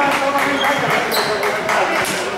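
A handball bouncing on the wooden court floor, a few sharp knocks, with voices carrying through the sports hall.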